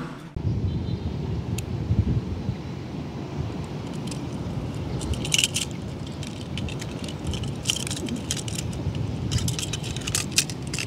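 Small die-cast toy cars clicking and clinking against each other as they are gathered up and held in a hand, in clusters from about four seconds in, over a steady low rumble.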